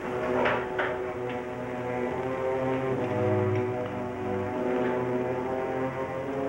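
Background music score of sustained, slowly changing chords, with a couple of sharp struck accents about half a second in.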